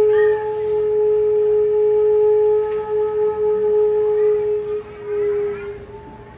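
One long musical note held steady in pitch, with a brief dip near the end before it stops.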